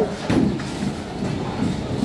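Bowling ball rolling slowly down a wooden lane, a steady low rumble.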